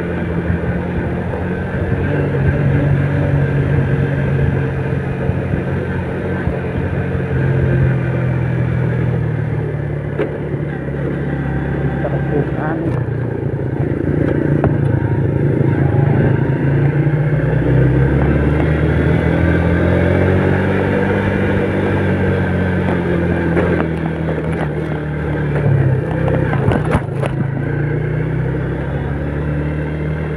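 Yamaha Vega underbone motorcycle engine running under way, its note rising and falling with the throttle over wind and road noise, with a few sharp knocks near the end.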